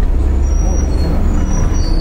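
Steady low rumble of a taxi driving through city traffic, heard from inside the cabin. A few faint, thin high-pitched squeals come and go partway through.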